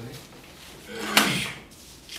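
A single short knock with a rustle on the desk about a second in, as things are handled on the desk.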